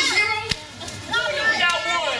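Children's and adults' voices talking over one another, with one sharp click about half a second in.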